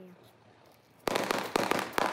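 Firecrackers going off, a quick string of sharp cracks starting about a second in, several within a second.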